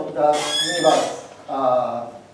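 Speech: a person's voice talking in a room, with one high, bright stretch about half a second in.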